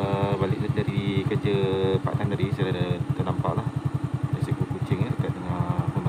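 Small motorcycle engine idling with a steady, even pulse, while a voice-like pitched sound comes and goes over it several times.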